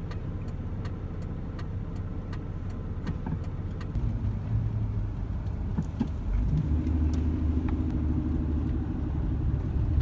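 A car's engine and tyre rumble heard from inside the cabin while driving, steady and low, with scattered light ticks and rattles. The engine note grows louder about four seconds in, and again from about six and a half seconds in.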